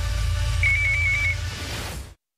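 Closing music sting: a held deep bass tone with a short, high, warbling electronic beep about half a second in, cut off abruptly at the end.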